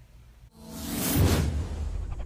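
Whoosh sound effect of an animated logo intro, swelling from about half a second in to a peak just past a second, over a deep low rumble that carries on.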